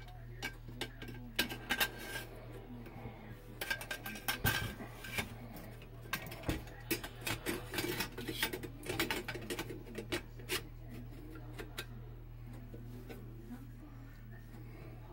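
Metal free-float handguard being slid over a stainless bull barrel onto an AR upper's barrel nut: a string of light metallic clicks, knocks and scrapes that stops about ten seconds in.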